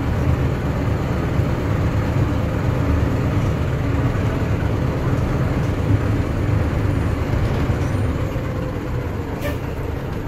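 A bus's diesel engine and road noise heard from inside the cabin as it drives slowly along a street: a steady low rumble.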